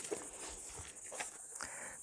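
Faint ambience of a brick-laying site with a few soft knocks of bricks and stones.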